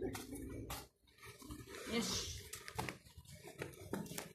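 Low, wordless voices, with a few sharp clicks.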